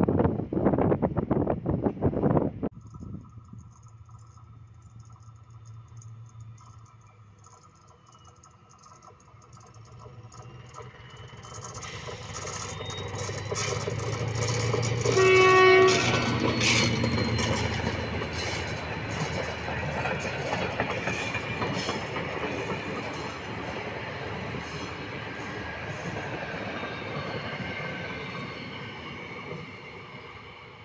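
Wind rushing on the microphone at first, then an SM42 diesel shunting locomotive approaching and passing close with its engine running. It gives one short horn blast about halfway, the loudest moment. Its train of flat wagons then rolls by, clattering over the rail joints and slowly fading.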